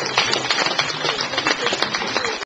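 Small audience applauding: many hands clapping in a dense, irregular patter.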